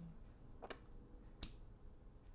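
Two sharp clicks about three-quarters of a second apart.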